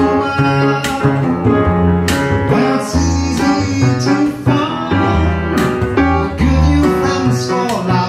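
Live jazz bossa nova played on a plucked double bass and piano, with deep bass notes changing every second or so under piano chords.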